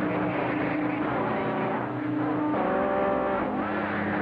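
Radio receiver audio from a transceiver tuned to a busy band: steady static hiss with several continuous heterodyne tones from other carriers. Near the middle a brief cluster of higher steady tones comes in over the noise.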